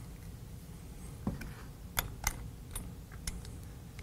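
Handful of sharp clicks from the steel action of a Roper revolving shotgun being worked by hand, its bolt and magazine follower moved back and forth; the two loudest clicks come close together about two seconds in.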